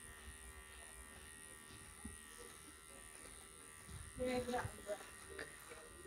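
Handheld electric horse clippers running with a faint steady hum as they trim the long guard hairs on a horse's leg.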